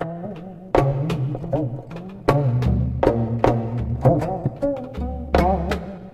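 Slow Korean traditional instrumental music on a low plucked string instrument: separate sharp notes, a few a second at an uneven pace, each ringing on and bending in pitch.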